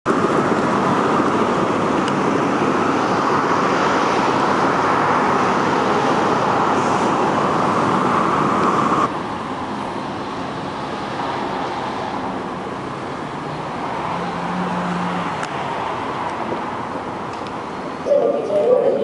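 Steady city street traffic noise. About halfway through it drops suddenly to a quieter level, with a faint low engine hum a few seconds later.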